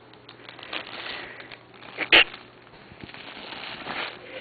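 Faint crackling and rustling as a cat plays with a toy, with one sharp knock about two seconds in.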